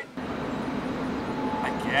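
Steady outdoor background noise, an even rumble and hiss with no clear events, with a short spoken reply at the very end.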